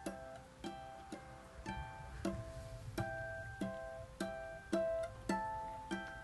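Enya ukulele played in one-hand harmonics, two notes sounded together with each pluck: a slow series of about a dozen plucks, roughly two a second, each left ringing until the next.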